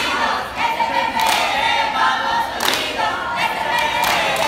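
A group of young voices chanting a cheer together in unison, in a sing-song way, with a few sharp claps or stamps.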